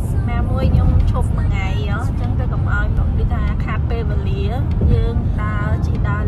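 Steady low rumble of road and engine noise inside a car's cabin at highway speed, under people talking.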